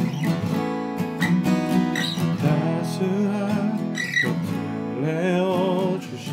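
Eastman E6D dreadnought acoustic guitar with phosphor bronze strings played as accompaniment, chords struck roughly once a second and left to ring.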